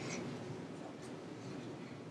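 Faint typing on a laptop keyboard, a few light key taps over quiet room tone.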